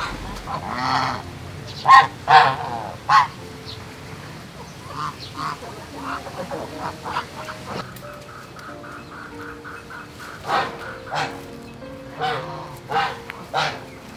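Domestic geese honking, several loud calls about two to three seconds in and fainter ones later, over soft background music.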